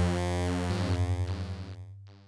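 Yamaha CS-80 analogue synthesizer sounding a single held low note, rich in overtones. Under a second in, a fast wobble sets in, and the note fades toward the end. It is one of a series of notes played key by key to build a multisample.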